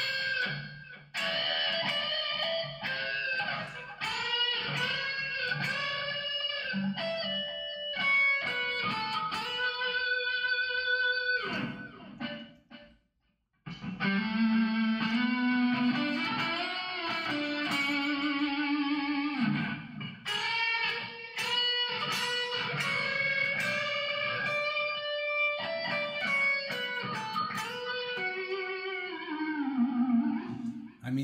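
Electric guitar played live, working out a melodic lead line by ear, with sustained notes and some bends. It stops for about a second near the middle, then carries on, with a falling slide near the end.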